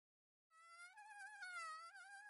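Recorded mosquito buzzing: a faint, high-pitched whine that wavers up and down in pitch, starting about half a second in.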